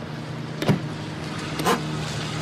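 A car engine running steadily, with two brief sharp sounds, one under a second in and one near the end.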